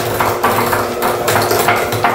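Electric hand mixer running steadily, its beaters whipping cream cheese and butter and clicking rapidly against the glass bowl.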